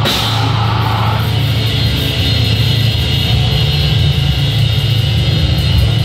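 Live heavy metal band playing loudly: electric guitar over a drum kit, without a break.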